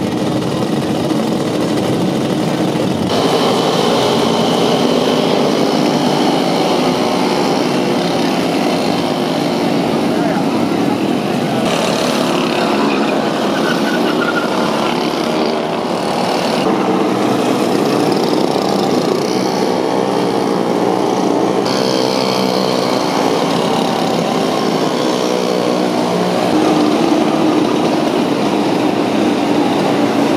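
Small engines of derny pacing motorbikes running as a pack of dernys with cyclists behind them rides past, with voices in the background.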